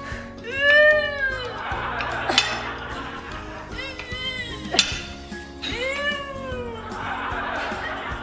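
Background music with a high squeal that rises and then falls in pitch, heard three times, each followed by a hiss. Two quick downward zips come between the squeals.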